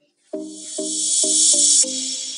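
Background music: a run of short plucked notes, about two a second, under a high hiss that swells and then cuts off sharply just before the end.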